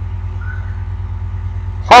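A steady low hum with a faint regular pulse, with a man's voice starting again near the end.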